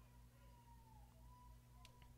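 Near silence: faint broadcast-line room tone, a low steady hum with a faint thin wavering tone above it.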